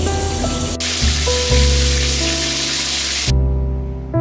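Shower water spraying from a showerhead in a steady hiss, under background piano music. The water sound cuts off suddenly about three seconds in, leaving only the piano.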